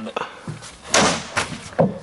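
Hockey slapshot: a sharp crack about a second in as the stick strikes the puck on a plastic shooting pad, followed by a couple of lighter knocks.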